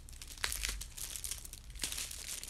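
Clear plastic wrapping on bars of handmade soap crinkling as the bars are handled and stacked in the hands, with two sharper crackles, about half a second in and near the end.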